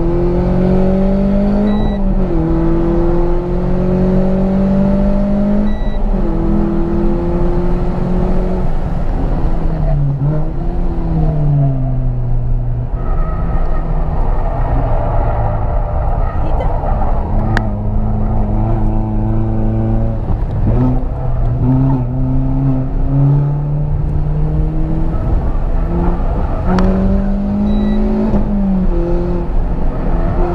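Renault Sandero RS's 2.0-litre four-cylinder engine heard from inside the cabin on track, pulling up through the revs with its pitch climbing and dropping sharply at upshifts about two and six seconds in. The revs then fall and climb again through the rest of the lap, over steady road and tyre rumble.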